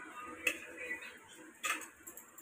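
An aluminium pot knocks lightly against a steel mixing bowl twice, as chopped herbs are tipped from it into minced meat.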